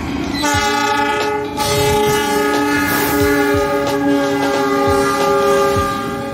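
A KAI diesel locomotive's air horn sounding one long blast of several tones at once, starting about half a second in, over train wheels clattering on the rails.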